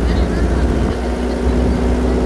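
Steady engine and road drone heard inside a moving vehicle's cabin, a low rumble with a steady hum that sets in just under a second in.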